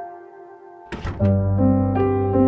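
Dramatic background score: soft held chords fade away, then about a second in a sudden heavy hit lands. A deep low boom follows, with sustained piano-like chords.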